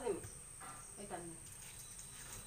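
Crickets trilling: a faint, steady, high-pitched tone, with faint voices murmuring briefly about half a second and a second in.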